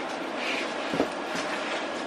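Steady running noise of a passenger train heard from inside the carriage, with a faint click about a second in.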